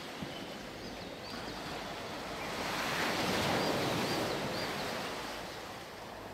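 Ocean surf ambience: a wave washes in, swelling and then fading, with a few faint, short, high chirps over it.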